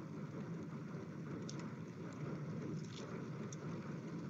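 Faint steady background hum and hiss through the voice-chat line during a pause in speech, with a few faint clicks.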